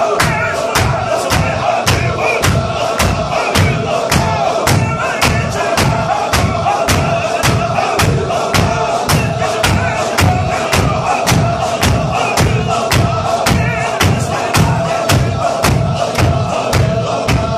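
Men of a Chechen Sufi zikr chanting together on a held note, driven by sharp, even hand claps at about two and a half a second.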